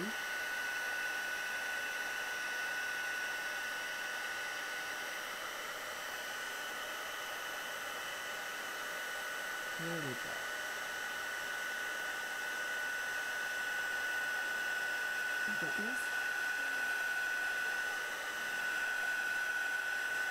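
Handheld embossing heat tool running steadily, blowing hot air to melt gold embossing powder on a stamped paper label: an even fan rush with a thin steady whine.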